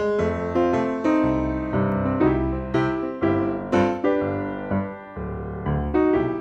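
Background piano music, notes struck at about two a second in an even, lively rhythm.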